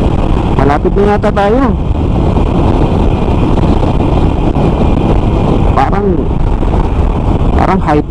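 Harley-Davidson Sportster 883's air-cooled V-twin engine running steadily at cruising speed, mixed with heavy wind and road noise.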